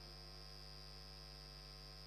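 Near silence with a faint steady electrical hum and a thin high tone above it.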